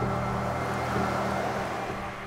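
A pickup truck driving past on a town street: engine and tyre noise that builds toward the middle and eases off near the end, over background music holding a steady low chord.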